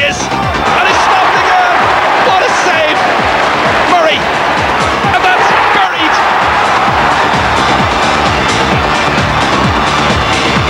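Upbeat electronic background music with a steady beat, mixed with a stadium crowd cheering and shouting, loudest in the first few seconds.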